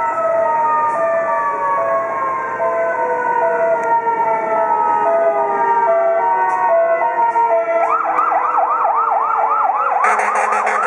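Fire rescue truck's sirens on an emergency run: a two-tone hi-lo siren stepping back and forth between two pitches, with a second wailing tone slowly falling in pitch beneath it. About eight seconds in, the siren switches to a fast yelp of about three or four rising sweeps a second.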